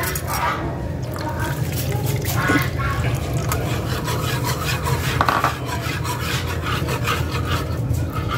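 Wire whisk stirring milk in a nonstick pan, the metal tines scraping and swishing through the liquid as cornstarch is whisked in to thicken a white sauce, over a steady low hum.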